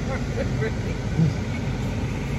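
Steady low hum of a car's interior with the engine running, heard from inside the cabin, with a few faint voice sounds in the first second or so.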